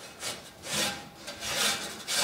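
A long-handled stiff brush scrubbing down a bull's hide in repeated rasping strokes, about two a second.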